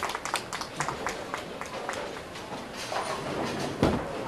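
Bowling alley din with scattered clacks and knocks from the lanes, then just before the end a heavy thud as a bowling ball is released onto the wooden lane and starts to roll.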